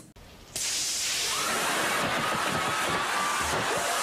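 Water spraying hard from a garden hose nozzle: a steady, loud hiss that starts suddenly about half a second in.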